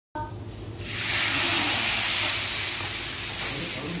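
Sauce sizzling and hissing on hot grilled mutton chops, frothing up as it hits the meat. The hiss starts about a second in and dies down toward the end.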